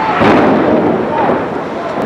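A loud explosion as the airliner strikes the World Trade Center tower, with a sudden blast about a quarter second in, and voices heard over it.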